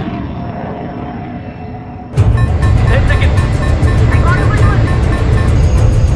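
Aerial-combat film soundtrack: music and sound effects that jump suddenly to a loud deep rumble about two seconds in, with a fast, regular pulse over it.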